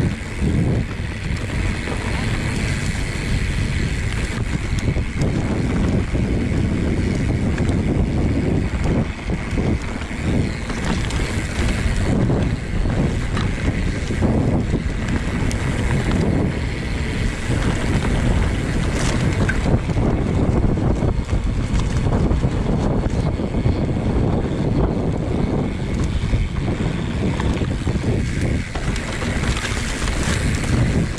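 Wind buffeting a ride-mounted camera's microphone while a mountain bike rolls down a dirt trail, with the tyres rumbling over the ground and frequent short knocks and rattles as the bike goes over bumps.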